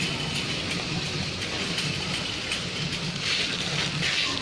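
Crinkly plastic packaging rustling as packs of Milo sachets are handled, louder near the end, over steady supermarket background noise.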